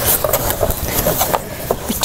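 Packaging rustling and crinkling in quick, irregular crackles as items are handled and lifted out of a box.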